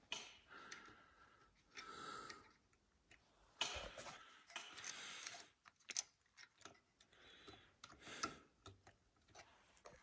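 Near silence with faint, scattered clicks and light handling noises of small metal parts as a throttle lever and spring are fitted to a small engine's carburetor.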